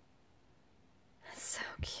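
Quiet room tone, then near the end a woman's soft, breathy 'so cute', the 's' hissing before the word.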